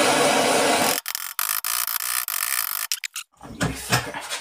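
Sievert handheld gas blowtorch on a Powergas cartridge burning with a loud, steady rushing hiss of flame as it heats a section of exhaust pipe, with a few brief breaks, then shut off about three seconds in. A short bit of handling noise follows near the end.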